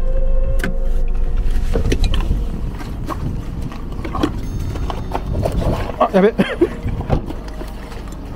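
Low rumble of a car moving slowly over a rough dirt track, heard from inside the cabin, fading out about two and a half seconds in; then scattered crunching footsteps on gravel and dry leaves.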